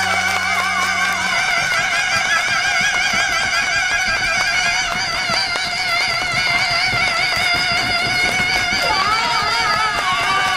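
Several male voices sing one long held note in harmony through stage microphones, with wide vibrato. The low instrumental backing stops about a second and a half in, leaving the voices holding on alone, and they shift pitch near the end.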